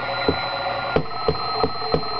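Audio from a homebrew WBR regenerative receiver running in oscillation and tuned to a data signal: steady whistle tones with short pulses about three times a second. The tones hold nearly steady in pitch, shifting a bit but not much, a sign of the set's stable construction.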